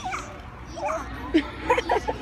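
Children's voices: a string of short, high yelps and squeals with quick rises and falls in pitch, coming faster and louder near the end.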